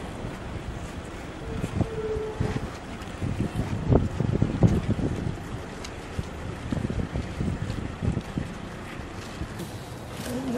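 Wind buffeting the microphone in uneven low gusts over a steady rushing hiss.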